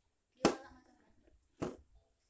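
Two short knocks as the iron's metal soleplate assembly is set down and handled on the workbench, the first about half a second in and louder, the second near the end.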